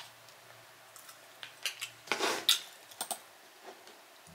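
A utensil clicking and scraping against a bowl in irregular small clinks during eating, busiest about halfway through.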